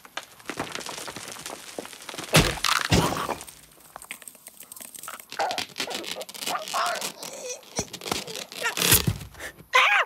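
Cartoon slapstick sound effects: rock cracking and heavy thuds as a boulder comes down, with loud impacts about two and a half seconds in and near the end. The cartoon bird gives strained vocal grunts and groans in the middle.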